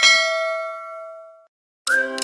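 A single bright bell-like ding sound effect, the click on a notification bell icon, ringing out and fading away over about a second and a half. Music with plucked strings starts near the end.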